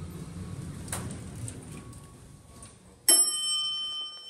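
Dover elevator car levelling at a floor, its low rumble fading out, then about three seconds in a single loud arrival chime strikes and rings on.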